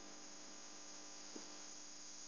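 Faint steady electrical hum and hiss: background noise on the narration microphone, with one small click a little past halfway.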